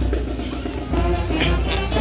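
School marching band playing a march, with drums and brass.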